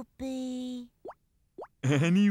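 Cartoon sound effects: a short steady pitched note, then two quick rising bloops about half a second apart. A louder cartoon voice starts near the end.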